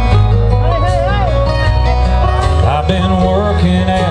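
Live country band playing, with drums, bass and acoustic guitar under a melody line that wavers in pitch.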